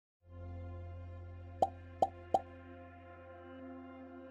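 Intro sting for a logo animation: a sustained low synth drone and chord, with three short sharp pops in quick succession about a second and a half in.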